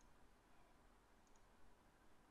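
Near silence with a faint computer mouse click, heard as a quick pair of tiny ticks a little over a second in.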